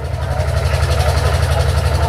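An engine idling steadily, a low, even pulsing rumble.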